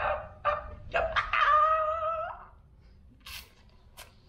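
A man's high-pitched, drawn-out vocal exclamation lasting about a second, starting about a second in, his reaction of delight on tasting the food in his mouth. A short breathy hiss follows near the end.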